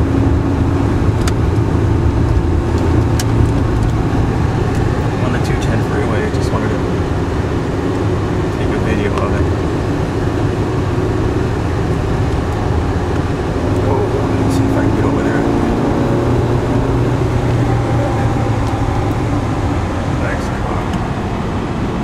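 Steady road and engine drone heard from inside a car cruising at freeway speed, low and even throughout.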